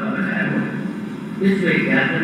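A man speaking in Hindi, giving a religious discourse.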